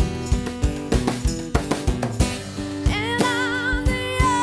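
A live acoustic band: steel-string acoustic guitar strumming over a steady drum beat. A woman's voice comes in about three seconds in, holding a long note with wide vibrato.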